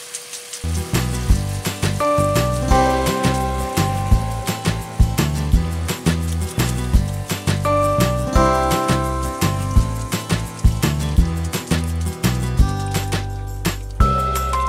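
Background music with a bass line and a steady beat, coming in about half a second in.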